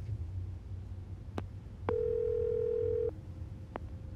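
Telephone ringback tone as an outgoing call rings through: one steady ring tone lasting about a second, with a click before it and another click near the end.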